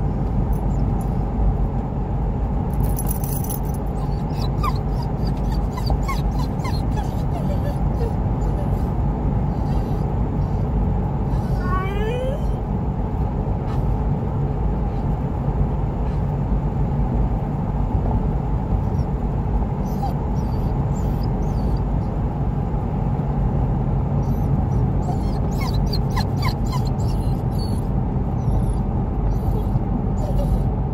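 A dog whining now and then inside a moving car over steady engine and road noise: short high whines a few seconds in and near the end, and a longer rising whine about twelve seconds in.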